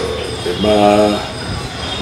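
A drawn-out filled-pause vowel like "euh", held on one steady pitch for about half a second, a little after the start, over a low steady background hum.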